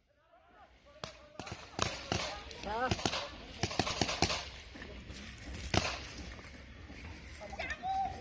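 Paintball markers firing: an irregular run of sharp pops, thickest in the middle and ending with a single shot about six seconds in, with distant shouting among them.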